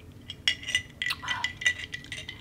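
Metal straw and ice clinking against a glass mason jar as the iced matcha is stirred: a run of light, ringing clinks starting about half a second in.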